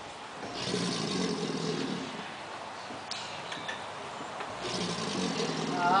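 American alligator bellowing twice, each bellow a low roar of about a second and a half, a few seconds apart: a male's territorial call.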